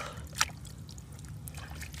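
Faint water trickling and dripping from a wet hand and freshly dug razor clam into a shallow puddle in the sand, with one short sharp tap a little way in.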